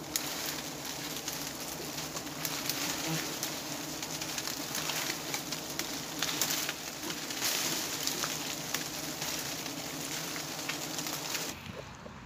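Swarm of giant honey bees (Apis dorsata) buzzing around a nest that is being smoked, a steady drone of agitated bees with a crackling hiss over it. The sound drops sharply just before the end.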